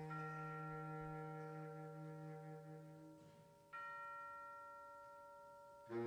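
Concert band in a soft, quiet passage: a held chord rings and fades away, then about four seconds in a single struck bell-like tone rings out and slowly dies. The fuller band comes back in at the very end.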